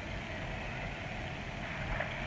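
A steady low rumble of background noise, unchanging through the moment.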